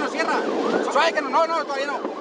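Raised voices of people inside a moving car, over steady engine and road noise.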